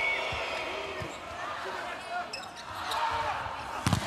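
A volleyball being struck by hand during a rally, heard as a few sharp slaps over steady arena crowd noise. The last hit, near the end, is the loudest.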